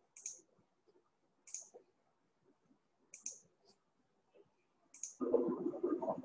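Faint computer mouse clicks, about five of them spread a second or more apart, over near silence. A louder, muffled sound starts near the end.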